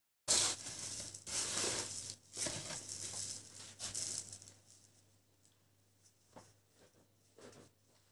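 Salt crunching and scraping under hands as a slab of pork fat is pressed and rolled in a heap of salt on an oilcloth table. It comes in several gritty bursts over the first four seconds or so, then only a few faint ticks.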